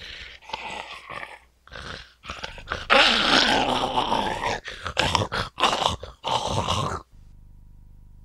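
A person making zombie growls and groans in a string of uneven bursts, loudest from about three to four and a half seconds in, breaking off about a second before the end.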